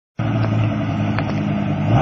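Dodge pickup truck's engine running at steady revs, a low even drone.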